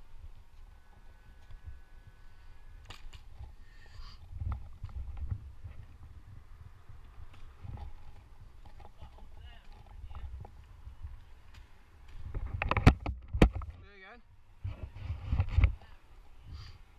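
Handling noise from a climber shifting about in a tree, picked up by a helmet-mounted camera: low rumble and rustling, with two sharp knocks of gear close together near the end.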